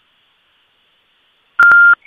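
Near silence, then about one and a half seconds in a short, loud, single-pitched electronic beep lasting about a third of a second, with a sharp click at its start and end.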